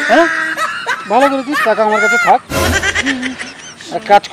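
People's voices making drawn-out, wavering non-word sounds, snicker-like, with a short rough noisy burst about two and a half seconds in.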